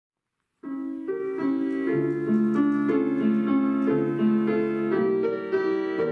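Grand piano playing the introduction to a romance, starting about half a second in after silence: chords and a melody line, each note ringing on as the next is struck.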